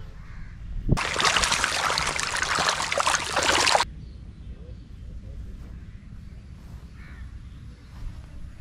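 Loud, dense water splashing and churning for about three seconds, starting sharply and cutting off abruptly. Quieter outdoor ambience follows.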